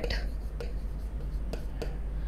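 Pen writing a word on an interactive smart-board screen: a few faint taps and light scratches, over a steady low hum.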